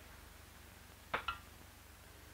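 Faint steady hiss and low hum of an old film soundtrack, broken about a second in by a brief double tick.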